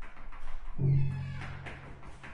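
Cello played with the bow in free improvisation: scratchy, noisy bow strokes, then a low bowed note comes in a little under a second in and holds for about a second before fading.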